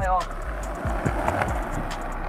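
Skateboard wheels rolling over rough concrete, a rush of noise that swells and then fades, over background music with a steady beat.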